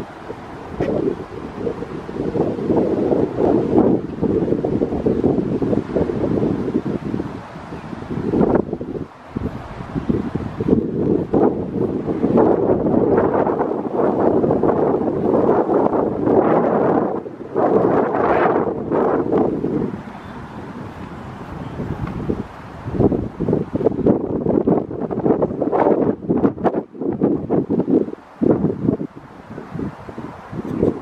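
Wind buffeting the microphone in gusts, a low rumbling rush that swells and drops off repeatedly.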